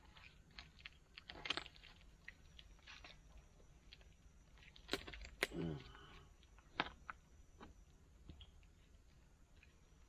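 Faint clicks and knocks of tree-climbing gear (climbing sticks, straps and metal hardware) against a pine trunk as a climber steps up. A louder pair of sharp clacks comes about five seconds in, followed by a brief falling tone, and another sharp knock comes about a second later.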